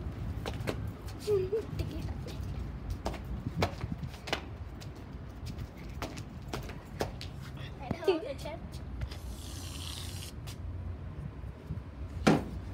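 An aerosol can of shaving foam being shaken, with scattered clicks and knocks, then a hiss of about a second, about three-quarters of the way through, as foam sprays out of the can.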